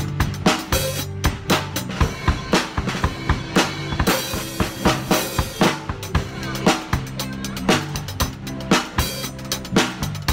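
Acoustic drum kit played live in a busy groove of snare and bass-drum strokes, with a cymbal crash about four seconds in, over a backing song.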